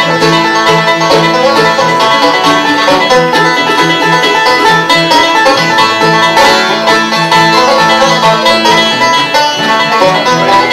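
Bluegrass band playing an instrumental break, a five-string resonator banjo picking the lead over strummed acoustic guitar.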